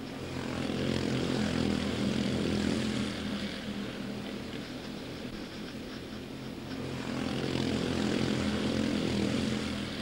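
A pack of quarter-midget race cars with single-cylinder Honda 160 engines running at racing speed. The engine drone swells as the field passes close, eases off, then swells again toward the end.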